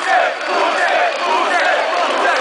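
Large concert crowd shouting and cheering, many voices overlapping in a steady din.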